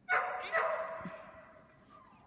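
A dog barking twice, about half a second apart, each bark ringing on and fading slowly in the echo of a large hall.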